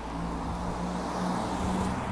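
A motor vehicle's engine running, heard as a steady low hum that grows a little louder near the end.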